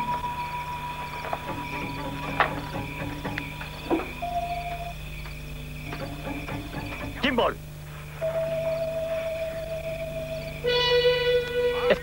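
Suspenseful film score of long held notes over a steady chirping of night insects. A few short sharp sounds break in, and a brief loud cry comes about seven seconds in.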